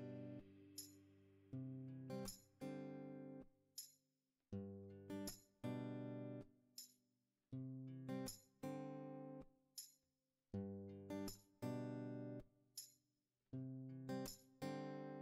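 Background music: an acoustic guitar playing chords, each struck sharply and left to ring out, with short silent gaps between them.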